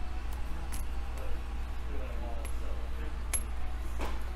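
A few light metallic clicks and clinks, about four spread through, from a small flathead screwdriver working the screw on a metal 4-pin circular connector as it is tightened, over a steady low hum.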